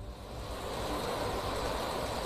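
Heavy rain and strong wind in a downpour, a steady rushing hiss that swells in at the start.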